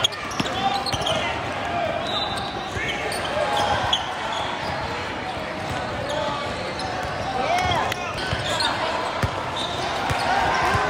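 Basketball game play in a large gym: sneakers squeaking on the court, the ball bouncing now and then, and players' and coaches' voices echoing in the hall.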